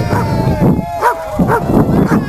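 A dog barking several short times, with people's voices around it.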